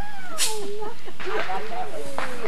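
Indistinct voices chattering, with one sharp crack about half a second in.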